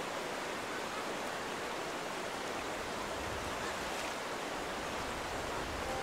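Steady rush of a shallow rocky river running over stones and small rapids.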